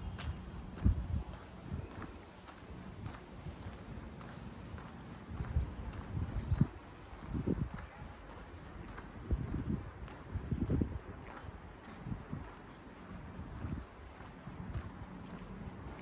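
Wind buffeting the microphone in irregular low rumbling gusts, over faint steady outdoor hiss.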